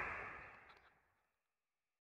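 Near silence: faint background noise fading out within the first half second, then silence.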